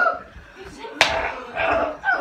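One sharp smack about a second in, like a hit landing, with voices around it.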